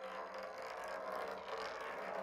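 Dense, hiss-like noise with a faint low hum underneath, cutting in abruptly in place of a sustained bell-like drone in an experimental ambient sound piece.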